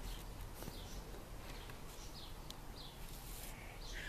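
Faint room noise with a few short, high bird chirps now and then.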